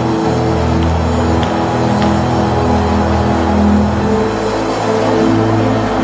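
Slow worship music of long held keyboard chords, the low notes shifting to a new chord about four seconds in.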